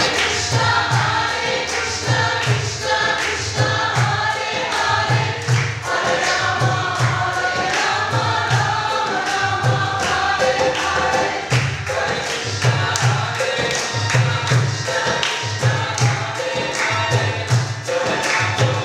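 Group kirtan: many voices, women's prominent, chanting a mantra together in unison over a steady low hand-drum beat and lighter percussion strokes.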